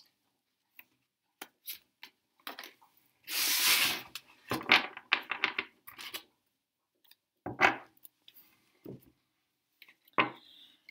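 Tarot cards handled on a bare wooden table: light clicks and taps, a swish of about a second as the fanned cards are swept together a few seconds in, a quick run of taps just after, and one sharper tap near eight seconds.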